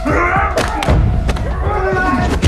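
A hand-to-hand fight: several heavy thuds of blows, about one every half second, with a man's strained cries near the start and again near the end.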